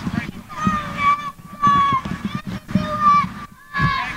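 Girls' voices calling out in a string of long, high-pitched, drawn-out shouts, over a low murmur of adult voices.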